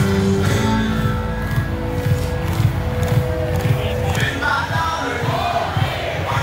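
Music playing in a packed football stadium, with a large crowd singing along.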